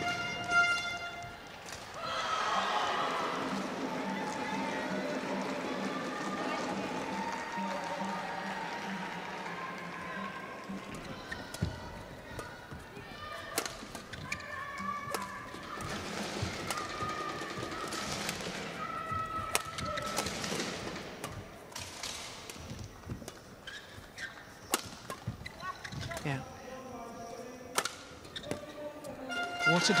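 Indoor badminton rally: a run of sharp, irregular racket hits on the shuttlecock, coming after about ten seconds of background arena voices and music.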